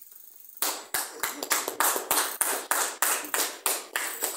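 Hands clapping in a steady rhythm, about three claps a second, starting just over half a second in.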